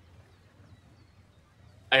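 Near silence: faint room tone with a low steady hum, then a man's voice starts speaking at the very end.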